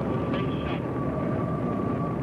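Space shuttle launch: a deep, steady rumble of the rocket engines.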